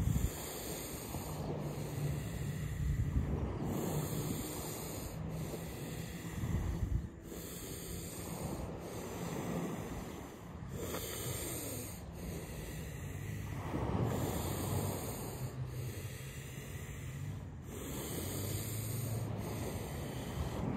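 A man breathing deeply and forcefully through a round of Wim Hof method breaths, about one full breath every two seconds.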